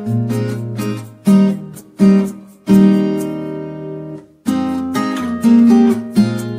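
Background music on acoustic guitar: strummed and plucked chords, with one chord left ringing for over a second around the middle.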